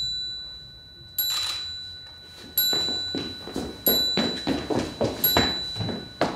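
Bell-like metallic strikes at a steady pace, about one every 1.3 seconds, four in all, each ringing out and fading. From about two and a half seconds in, softer knocks and plucked sounds fall between the strikes.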